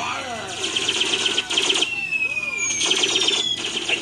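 Television soundtrack from an animated show: a jumble of voices and sound effects, with a falling, whistle-like sliding tone in the middle.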